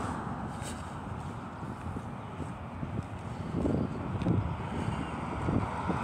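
Road traffic going by on a winter street, with the walker's footsteps on the sidewalk and a little wind on the microphone. A passing vehicle fades out at the start, and a few soft footfalls come through in the second half.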